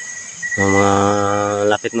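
Crickets calling with a steady high-pitched chirr from the night-time undergrowth. About half a second in, a man's voice starts a drawn-out, flat 'uhhh' that holds for over a second and is louder than the insects.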